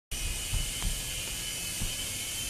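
Steady high buzz of a small indoor remote-control airplane's electric motor and propeller in flight, with a couple of low bumps in the first second.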